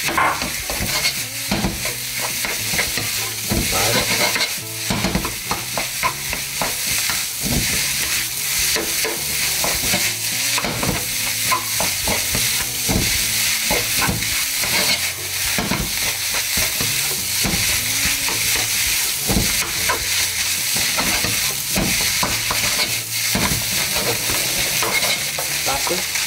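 Egg fried rice sizzling in a hot oiled nonstick pan while a wooden spatula stirs and tosses it, with frequent short scrapes and knocks of the spatula against the pan over a steady sizzle.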